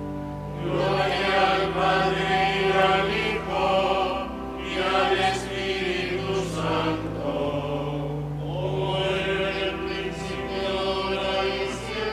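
Voices singing a liturgical chant, with held low notes sustained beneath the melody.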